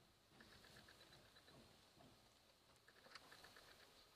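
Near silence: faint background with two short runs of rapid, faint ticks, about ten a second.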